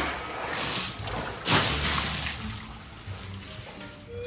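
Pool water splashing and sloshing as a swimmer plunges in and swims underwater, with the loudest splash about a second and a half in, settling toward the end.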